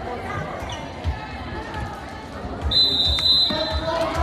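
Gym crowd chatter with low thuds of the ball and feet on the hardwood floor, then a referee's whistle blown once, sharp and high, a little under three seconds in, ending the rally. Crowd voices rise right after.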